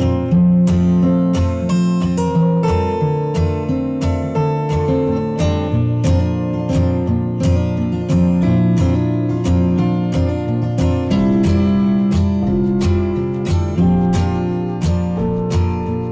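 Background music: an acoustic guitar strumming chords in a steady rhythm.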